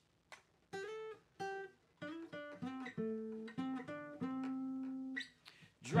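Steel-string acoustic guitar playing a picked single-note intro lick, one note after another, each left to ring, with the last few notes held longer. A louder strummed chord comes in right at the end.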